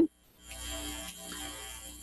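Pause in speech: a moment of dead silence, then a faint steady hiss with a low hum, the background noise of the recording.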